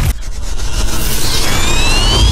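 Station-ident sound effect: a low rumbling build-up with a rising sweep that starts about halfway through, leading into the ident's hit.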